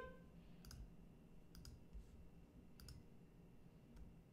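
Near silence with three faint, sharp clicks about a second apart.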